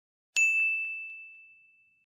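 A single bright, bell-like ding about a third of a second in, ringing on one clear high note and fading out over about a second and a half.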